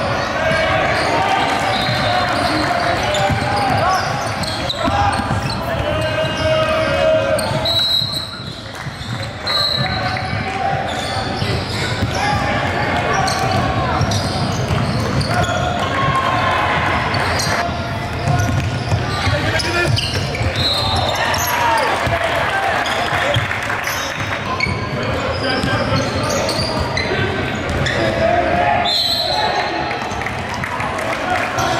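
Live sound of a basketball game in a gym: a basketball bouncing on the hardwood court under indistinct players' and spectators' voices echoing in the hall. A few short high-pitched squeaks come through at times.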